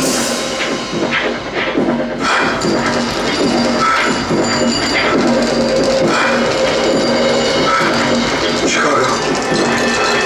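Live industrial electro-punk music: a synthesizer keyboard holds a steady drone while an acoustic drum kit is played with felt mallets.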